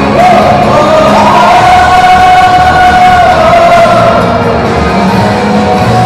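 Group of singers singing a Cantonese pop-rock song into microphones over a loud band backing, with one long held note in the middle.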